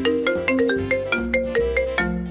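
A mobile phone ringtone playing: a quick, marimba-like melody of struck notes, several a second, over a low bass line.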